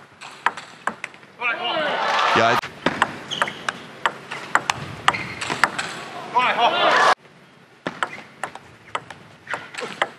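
Table tennis ball struck back and forth in fast rallies: a string of sharp, irregular clicks of the ball off rubber-faced rackets and the table.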